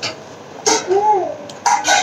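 Wet squishing and mouth sounds of eating rice and curry by hand. About three short, high-pitched calls that rise and fall in pitch are heard with it, like background clucking.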